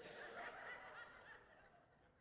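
Faint laughter from a congregation, dying away after a joke.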